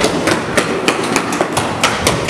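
Quick, irregular footfalls of several children running along a hard corridor floor, a rapid patter of sharp steps about four or five a second.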